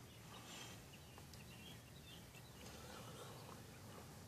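Near silence: faint outdoor background with a low hum and a few faint, high chirps.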